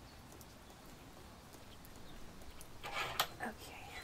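Quiet handling of a large furry plush toy as a tag's thread is worked loose by hand. About three seconds in comes a short burst of louder rustling with a sharp click.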